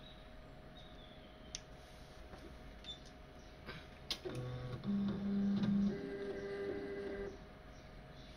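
Palstar HF-Auto automatic antenna tuner retuning for a new band. A few light clicks come first. From about halfway through, its stepper motors whirr for about three seconds, the pitch jumping in steps as they drive the capacitor and inductor to a match.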